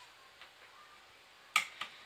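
A sharp click about one and a half seconds in, followed quickly by a smaller one: a 2.5-inch Samsung SSD being pushed home onto the SATA connector of a drive enclosure and seating.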